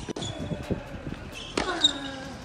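Tennis balls being hit with rackets and bouncing on a hard court: a few sharp pops, the loudest near the end, with short high squeaks.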